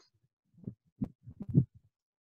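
A few faint, short, muffled low sounds with silent gaps between them, heard over a headset microphone on an online call.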